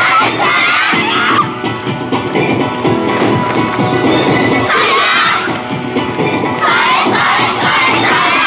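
Yosakoi dance music playing steadily, with a group of dancers' voices shouting calls together in bursts: near the start, about five seconds in, and again about seven seconds in.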